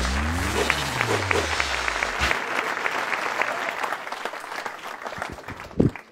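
Comedy-club audience applauding in welcome as a stand-up comedian comes on stage: dense clapping that thins out toward the end.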